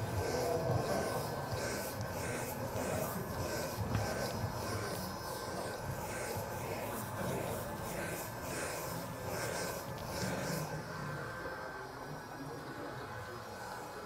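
Electric chalkboard eraser with a built-in dust vacuum running with a steady whine while it is rubbed back and forth across a blackboard in regular strokes. The scrubbing strokes stop about ten seconds in, while the motor keeps running.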